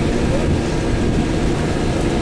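Engine and road noise of a moving vehicle heard from inside it, a steady low rumble.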